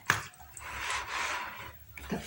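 Bare hands rubbing and squishing raw pork chops in a plastic basin, a soft wet rubbing that swells and fades, with a short click just after the start.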